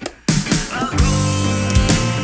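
Rock music with drums and guitar: after a brief break the band comes back in about a quarter second in, with drum hits under a held chord.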